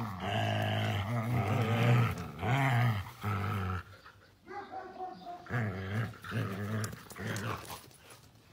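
Huskies growling in play while tugging at a stick between them, in a run of long, pitch-bending growls over the first few seconds, then shorter, fainter ones.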